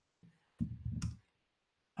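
One sharp click of a computer mouse or key about a second in, as the shared screen switches to the next slide. It is just after a brief, low, wordless murmur of voice.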